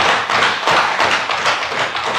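Many members of a legislative chamber applauding with a dense, irregular patter of desk taps and hand claps, steady and fairly loud.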